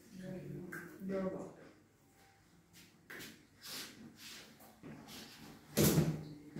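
Quiet, indistinct speech from people at a table in a small room, with a few soft noises, and one short, loud sudden sound near the end.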